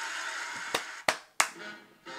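Three sharp hand claps in under a second, over a faint steady background hiss that drops away about halfway through.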